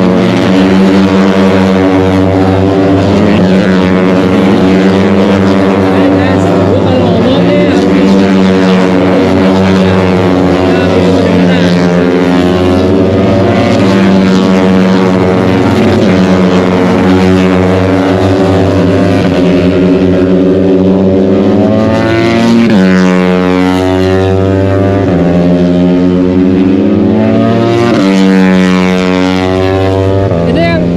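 Racing motorcycle engines running on the circuit: a loud, continuous engine drone whose pitch steps and glides up and down in the last several seconds.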